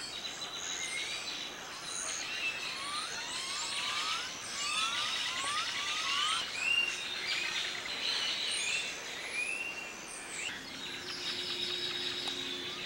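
Many birds chirping and calling at once: a dense run of short, rising and arching chirps that thin out near the end, over a steady high buzz.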